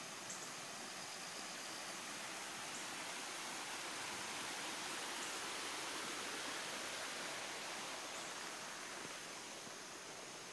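Steady rush of storm runoff water flowing along and across the road, growing louder in the middle and easing again toward the end.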